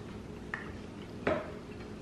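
A table knife knocking against a plate while cutting through a chocolate peanut butter cup: a light click about half a second in, then a louder clink a little past one second.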